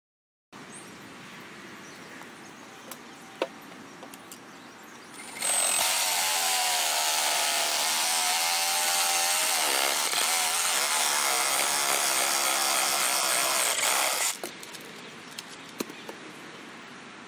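A handheld power saw cutting through a willow limb: it starts about five seconds in, runs steadily with a slightly wavering motor pitch for about nine seconds, then stops.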